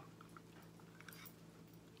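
Near silence, with a few faint light clicks and wet ticks from a wooden stir stick moving in a cup of thick acrylic paint.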